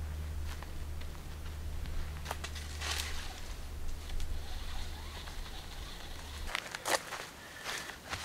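Faint rustles and a few light scuffs and knocks as a rope is hauled over a tree branch to hoist a food bag, with footsteps on the forest floor. A low steady rumble runs underneath and stops about six and a half seconds in.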